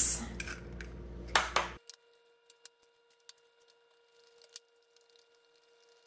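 Eggs being cracked into a glass mixing bowl: two sharp knocks about one and a half seconds in. Then near silence with only a few faint ticks.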